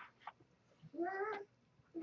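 A single short, high-pitched cry about a second in, lasting about half a second and rising slightly in pitch.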